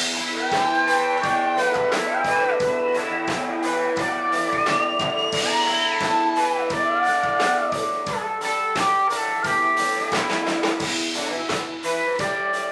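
Live blues-rock band playing an instrumental break: a lead line of bending notes, most likely electric guitar, over strummed acoustic guitar and a steady drum beat, with no vocals.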